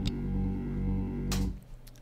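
Steady electrical appliance hum, a low drone with a stack of steady tones above it, picked up by a Deity V-Mic D3 Pro shotgun microphone with its low-cut filter switched off. A click comes about one and a half seconds in, and the hum stops just after it.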